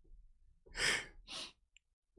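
Two breathy exhalations, the first the louder, as a person laughs out a sigh.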